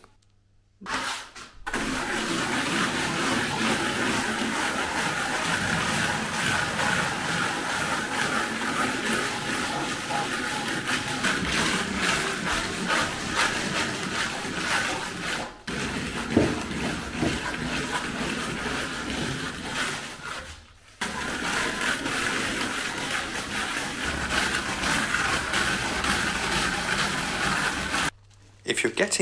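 A hand float rubbing over freshly applied textured thin-coat render, a steady gritty scraping as the render is worked to its finish. It starts about a second and a half in and breaks off briefly twice, once just past halfway and once about three quarters through.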